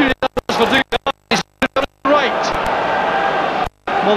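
Old TV football broadcast sound, crowd noise with a voice, that keeps cutting out to dead silence: several quick dropouts over the first two seconds and one more shortly before the end, the sign of a damaged, poor-quality recording.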